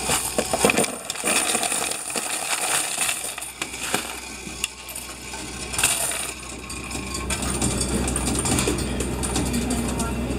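Mixed coins clattering as they are poured from a plastic container into a coin-counting machine's tray, then jingling and sliding as a hand spreads the pile toward the feed slot. The counting machine runs with a low hum underneath.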